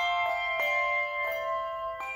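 Handbell choir playing a piece: several handbells struck in turn, each clear note ringing on and overlapping the next.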